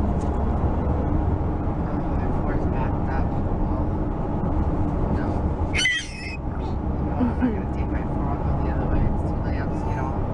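Steady low road and engine rumble heard inside the cabin of a moving car. About six seconds in, a brief high-pitched squeal rises above it.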